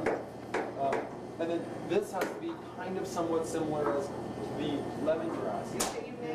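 Kitchen knife chopping on a cutting board: a handful of sharp, irregular knocks, the loudest one near the end, over voices talking.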